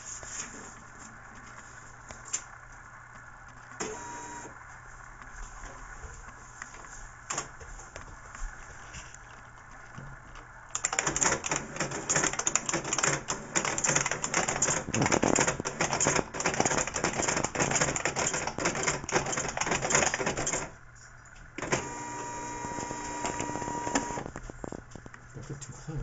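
OKI Microline 320 Turbo dot-matrix printer printing a line of text, along with typing on a PS/2 keyboard. After a quieter stretch with scattered clicks, about ten seconds of loud, rapid clicking follows, then a short pause and a shorter burst of printing noise carrying a steady tone.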